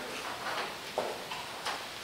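Quiet room tone: a steady hiss with a few faint clicks, one about a second in and another past a second and a half.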